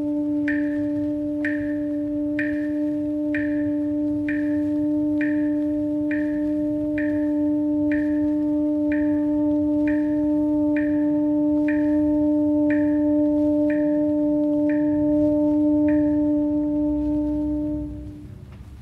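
Symphony orchestra holding one sustained low note while a bell-like struck note repeats softly above it about once a second, each stroke ringing and dying away. The strokes stop near the end and the held note fades, closing the piece.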